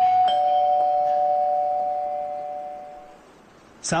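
Two-note ding-dong doorbell chime, a higher tone then a lower one, ringing on and fading away over about three seconds. It announces a visitor at the door.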